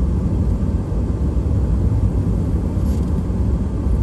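Steady low rumble of a car driving along a winding road, engine and tyre noise heard from inside the cabin.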